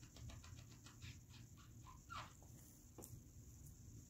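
Cavalier King Charles Spaniel licking: a quick run of faint wet smacks, about six or seven a second, then a short high squeak about two seconds in.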